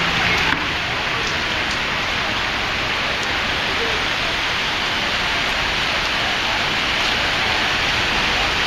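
Heavy rain pouring down in a sudden downpour, a dense steady hiss of rain on wet pavement.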